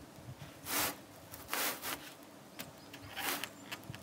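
A wooden board being pulled down and slid into place against the wall framing: three short scraping rubs, with a few faint knocks.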